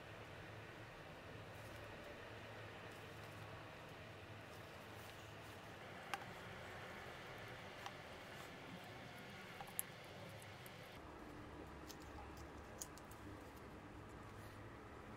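Faint steady hiss with a few small sharp clicks and light scraping of a plastic pry tool working around the rim of a camera's lens guard, cutting through the adhesive that holds it on.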